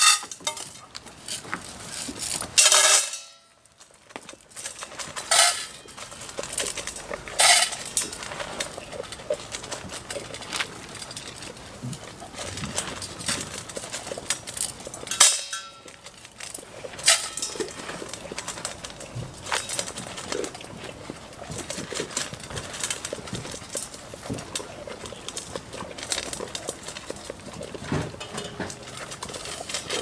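Metal feed bowls clinking and knocking as feed is scooped into them and goats eat from them: a run of irregular clanks and rattles, loudest about three seconds in and again about fifteen seconds in.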